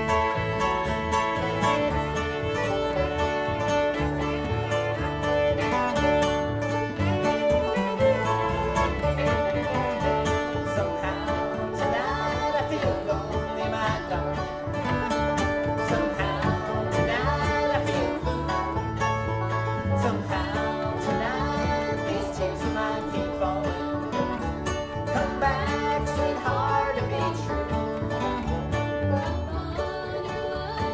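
Bluegrass band playing live: fiddle, banjo, acoustic guitar and upright bass together.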